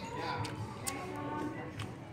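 Restaurant background of distant voices and music, with a few light taps about half a second in, near one second and near the end.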